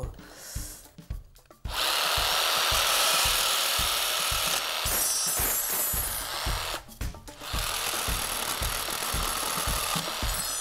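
Bosch jigsaw cutting through thin aluminium rod. The saw starts about two seconds in and runs steadily, stops briefly around seven seconds and then cuts again.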